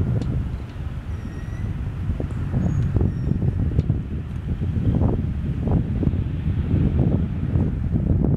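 Wind buffeting the microphone: a gusty low rumble that comes and goes in uneven swells.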